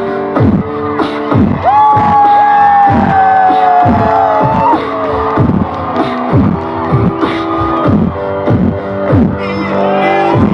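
Live rock band playing an intro over a steady beat, each beat a short falling sweep. A long high note comes in about two seconds in, sags a little in pitch, and breaks off about five seconds in.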